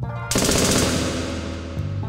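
A burst of rapid automatic gunfire, a sound effect, starting about a third of a second in and fading away within about a second and a half, over music with low sustained tones.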